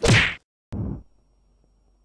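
Cartoon punch sound effect for a boxing glove striking: a loud swishing whack, then a sharp click and a shorter, lower hit about three-quarters of a second in, after which only a faint hum remains.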